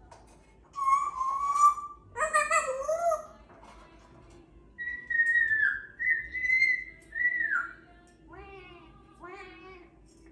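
African grey parrot whistling: a short whistle about a second in, a warbling call around two seconds, then a run of clear whistles that glide up and down from about five seconds to nearly eight, and two short chattering calls near the end.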